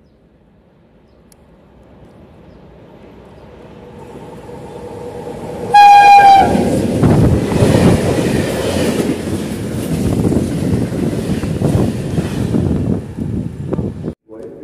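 Freight train approaching and passing through a station, its rumble growing steadily louder. One short horn blast comes about six seconds in, followed by the loud, continuous rolling noise and clatter of the wagons going by. The sound cuts off abruptly near the end.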